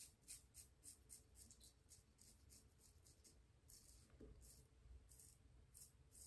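Faint, short scraping strokes of a Chiseled Face Legacy safety razor cutting stubble on the neck: a quick run of strokes at the start, a pause, then more strokes in the second half.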